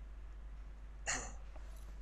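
One short, breathy burst of noise from a person's mouth or nose about a second in, over a steady low room hum.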